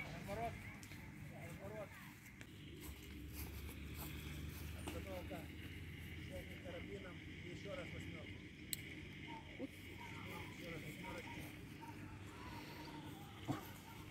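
Faint, indistinct voices of people talking in the background, over a steady low hum.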